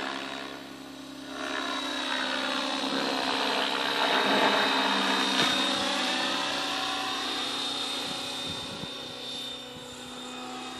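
Align T-Rex 600E Pro electric RC helicopter in flight: a steady motor whine and rotor noise. It grows louder as the helicopter comes close, peaking about halfway through, then fades as it moves away.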